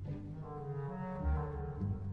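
Orchestra playing a tango, with low instruments carrying a line of held notes that change pitch about every half second.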